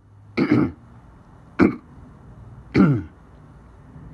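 A person clearing their throat: three short, loud throat-clears about a second apart, the last one falling in pitch.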